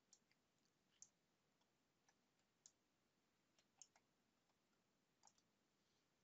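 Near silence, with a few faint, short clicks spaced irregularly about a second apart.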